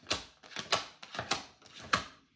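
Tarot cards being shuffled and handled by hand: a run of crisp card slaps and flicks, the strongest coming about every half second.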